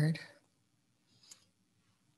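Near silence, room tone, with a single faint click just over a second in.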